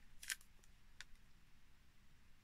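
Faint crackle of clear sticky tape being handled and peeled between the fingers: a short rustle near the start and a single small tick about a second in.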